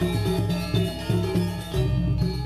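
Balinese gamelan music: metallophones ringing in quick, repeated notes over a steady low drone.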